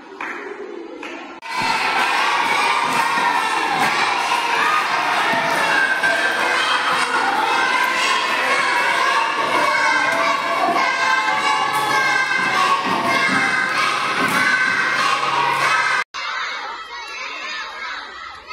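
Many children shouting and cheering at once, a loud, dense din that starts about a second and a half in and cuts off suddenly near the end, after which quieter crowd noise follows.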